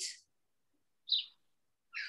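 A small bird chirping faintly in the background: two short, high chirps about a second apart.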